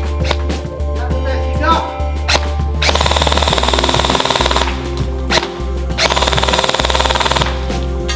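Airsoft gun firing on full auto in two bursts of about a second and a half each, a little over a second apart, starting about three seconds in. Background music plays throughout.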